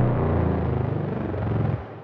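Deep, rumbling intro sound effect with a falling pitch, fading away and dropping off just before the end.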